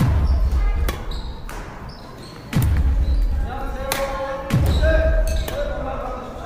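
Badminton drill on a wooden gym court: sharp cracks of rackets striking the shuttlecock, and three heavy thuds as feet land on the floor.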